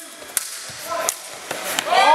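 Practice longswords striking each other in a fencing bout: three sharp clacks about three-quarters of a second apart. A man's voice calls out near the end.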